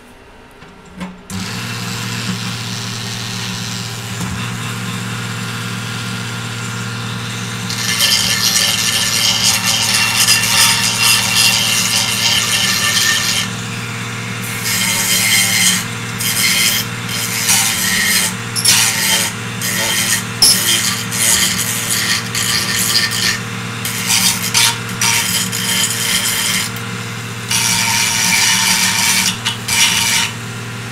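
Small corded pen-style rotary tool, switched on about a second in and running with a steady hum. From about eight seconds on it cuts into 3D-printed plastic in repeated gritty bursts, trimming the printed pieces.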